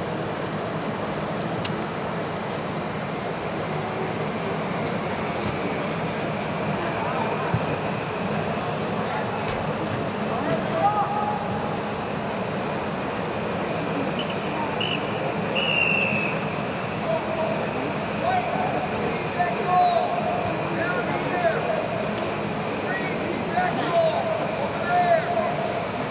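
Reverberant ambience inside an air-supported sports dome: the steady rushing noise of the dome's fans runs under distant, echoing shouts and calls from soccer players and onlookers. A brief high whistle sounds about two-thirds of the way through.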